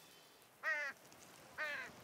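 A large bird calling twice: two short calls about a second apart, each falling in pitch.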